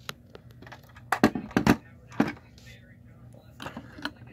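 Sharp clicks and taps of a die-cast model stock car being handled and turned over in the fingers, a quick cluster about a second in, another a little later and a few more near the end.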